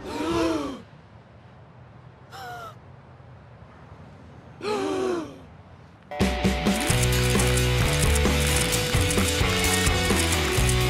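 Three short vocal gasps, their pitch rising and falling: one at the start, one about two and a half seconds in, one about five seconds in. About six seconds in, loud rock music with electric guitar starts abruptly.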